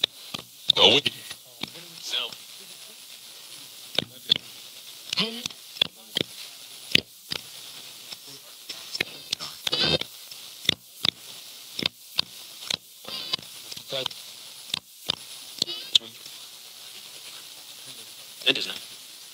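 Paranormal Systems MiniBox Plus AM ghost box sweeping the radio band: steady static hiss, broken every fraction of a second by clicks as it jumps between stations, with brief snatches of broadcast voices.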